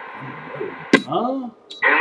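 CB radio between transmissions: a sharp click about a second in, then a brief faint voice, and another click just before the next station comes on.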